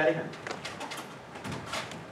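A man says "Daddy", then a few light footsteps and knocks on the stage as he walks off, with one faint dull thump about a second and a half in.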